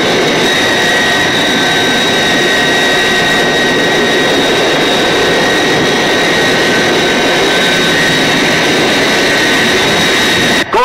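Film sound effect of jet aircraft engines: a loud, steady roar with a high, steady whine over it.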